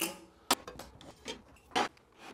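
Steel riving knife being handled and set down on the table saw's metal top: a sharp clink about half a second in, a faint tap, then another clink near the end.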